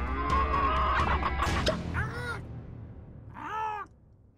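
Upbeat cartoon music with clicks fades out, then an animal-like cry rises and falls in pitch twice, the second one longer and louder near the end.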